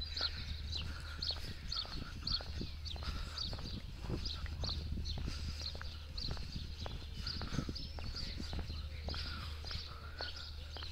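Footsteps on paving stones at a walking pace, with small birds chirping over and over in the background and a steady low rumble.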